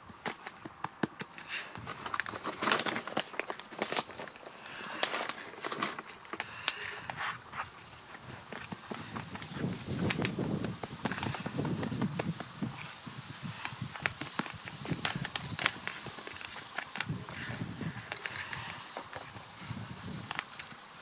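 Hands handling white peat: scooping it from a metal tray and crumbling and pressing it into a plant pot. Scattered clicks and crackles run throughout, with a few soft rustling bursts around the middle.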